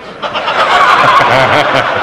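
A large audience bursting into laughter and applause, starting about a quarter of a second in: a dense wash of clapping with laughing voices through it.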